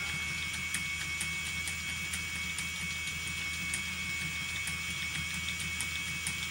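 Phoenix electric motor spinner running, its flyer spinning while flax is spun onto it: a steady low hum with a constant high-pitched whine and faint light clicks.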